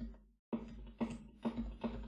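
Computer keyboard keys pressed one at a time, sharp separate clicks about two a second, starting about half a second in.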